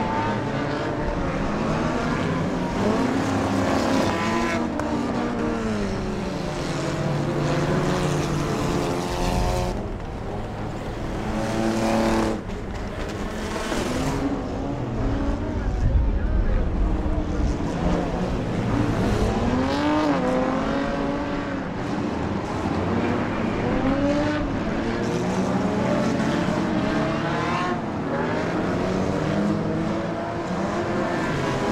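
A field of stock cars' engines running around an oval track, several at once, their pitch rising and falling as they accelerate and pass. About halfway through a closer car passes with a louder, deeper rumble.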